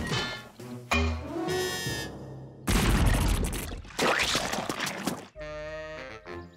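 Cartoon music with slapstick sound effects of a mortar firing paint: a low thump about a second in, then two loud, noisy blasts in the middle.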